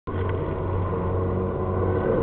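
Steady low mechanical hum with a few faint steady higher tones, even throughout, like a motor running.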